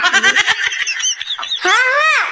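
A high-pitched, pitch-raised cartoon child's voice. It gives a rapid pulsing vocal sound for about the first second, then short cries that rise and fall in pitch.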